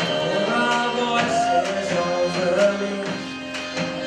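A live band playing: acoustic guitar, harmonium, drum kit and bass, with a singing voice and steady drum strokes.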